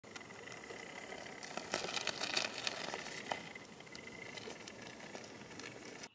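RC rock crawler working over sandstone: rubber tyres crackling and scraping on the gritty rock, busiest between about two and three seconds in, with a faint steady high whine underneath.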